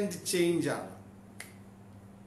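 A man's voice ends a phrase on a falling pitch, then in the pause a single short, sharp click sounds about one and a half seconds in, over a faint steady hum.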